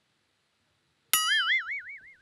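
Cartoon 'boing' sound effect: a sudden twangy tone about a second in, its pitch wobbling quickly up and down as it fades.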